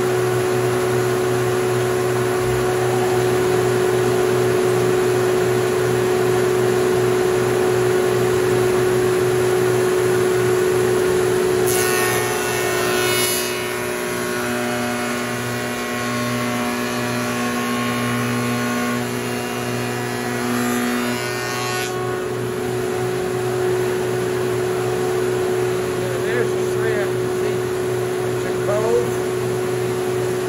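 A Powermatic shaper's 5 hp motor running with a steady hum. About twelve seconds in, its three-wing cove cutter bites into a panel edge, adding a harsh cutting noise for about ten seconds, before the machine runs on free again.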